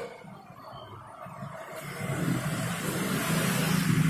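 Steady low hum that grows louder about halfway through and then holds.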